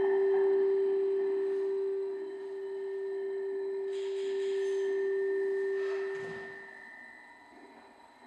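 Sound installation playing a steady pure tone with a fainter, higher steady tone above it. The main tone fades out about six and a half seconds in, leaving the quieter high tone and a soft hiss.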